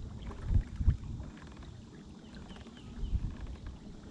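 Irregular low thumps and rumble, loudest about half a second and a second in and again near three seconds, with a few faint short chirps higher up.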